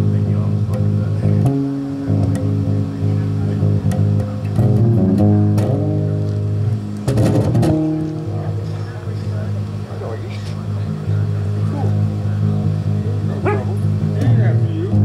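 Live band playing an instrumental passage, led by an amplified five-string electric bass holding long, loud low notes that change every second or two.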